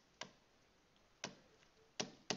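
Two short, sharp clicks about a second apart, with a third at the very end, over near silence: a stylus tapping on a drawing tablet as digits are handwritten.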